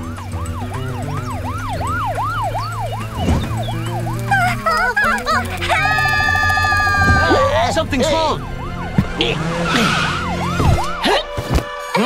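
Cartoon police siren sounding in quick rising-and-falling sweeps, about two to three a second, over background music with a steady low bass. Midway a wavering held tone breaks in, and then the sweeps resume.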